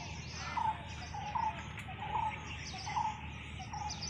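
A bird calling a short note over and over, about once every three-quarters of a second, over a steady high background chirping.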